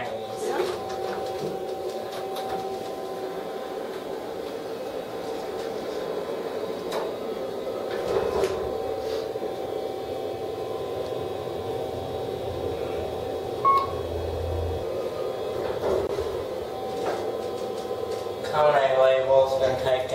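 Kone elevator cab in travel: a steady hum from the drive and cab fan, with a short electronic beep and a brief low rumble about 14 seconds in.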